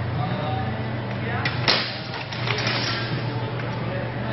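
Longswords striking in an armoured duel: a pair of sharp knocks about one and a half seconds in, the second the loudest, then a quick run of lighter hits over the next second, over a steady low hum.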